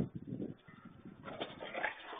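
Two German shepherds play-fighting and vocalising, in two spells: one at the start and a louder one from just past a second in.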